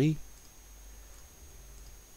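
Faint computer mouse clicking over quiet room tone, with a faint steady high whine.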